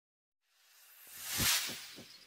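A whoosh sound effect: it swells from about half a second in to a loud peak near the end, then begins to fade.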